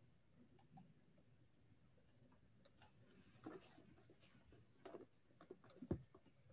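Near silence of room tone, with a few faint short clicks in the second half.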